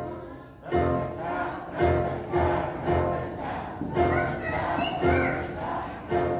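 Piano accompaniment playing steady chords about twice a second, with a children's choir singing over it in the second half.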